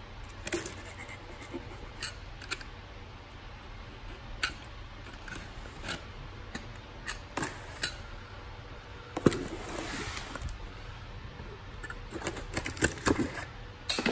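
Snap-off utility knife slicing through packing tape and cardboard on a shipping box: scattered short clicks and scrapes, with a longer rasping cut about two thirds of the way through.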